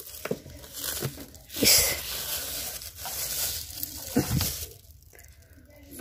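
Plastic bags of frozen fish and meat crinkling and knocking against each other as they are shifted about by hand inside a freezer, with a louder crinkle about two seconds in.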